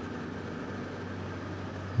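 Steady mechanical hum and hiss of a running HVAC/chiller unit, with an even low drone throughout.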